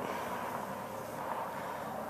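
Steady outdoor background noise: an even hiss with no distinct events.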